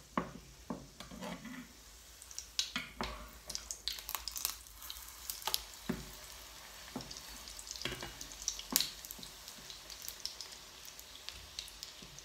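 A pancake sizzling in oil in a non-stick frying pan. A spatula scrapes and taps against the pan as it works under the pancake, making many irregular sharp clicks over the sizzle.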